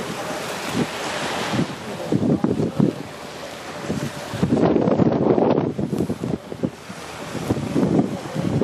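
Wind buffeting the microphone in uneven gusts over the wash of small waves on a sandy shore.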